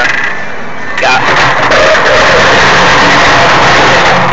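A vacuum motor switched on about a second in, whining up to speed and then running steadily.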